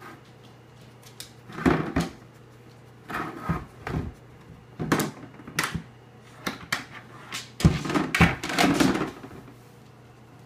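A dog rummaging with its head inside a bag on a wooden floor: irregular rustling and knocking as the bag is shoved and scraped about, in a string of short bouts that are busiest and loudest near the end.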